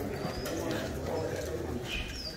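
Low murmur of a small crowd of people talking among themselves in a barn, with a few faint, short, high chirps over it.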